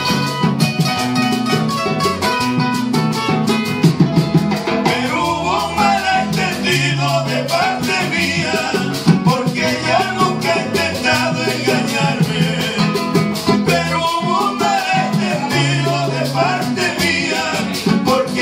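A live vallenato paseo played on two acoustic guitars with a hand drum keeping a steady beat. Male voices sing through a PA from about five seconds in.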